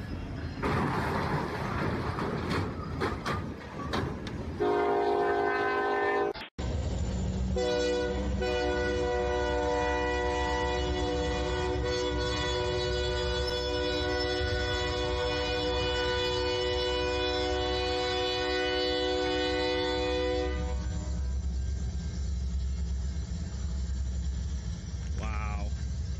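Train horn sounding over the rumble of a train: a short blast about five seconds in, then, after a sudden break, one long steady blast of about thirteen seconds. A low rumble carries on after the horn stops.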